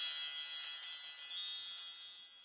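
High, glittering chime sound effect: a cluster of bell-like ringing tones with several bright strikes in quick succession, the loudest a little past halfway, fading out near the end.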